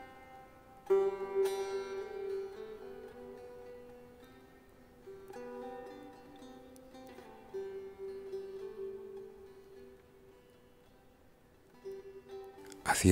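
Background music: a plucked string instrument playing slow, sparse notes, each struck sharply and left to ring and fade.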